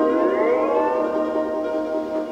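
Fender Stringmaster double-neck steel guitar chord sliding upward with the steel bar over about a second, then held and ringing at the higher pitch. This is the closing glissando of the tune.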